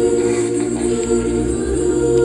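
A cappella vocal group singing with microphones, holding long steady chords over a low bass part.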